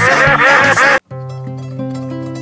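A rapid chorus of cartoon duck quacks over loud upbeat music, cutting off abruptly about a second in. Quieter plucked-guitar background music follows.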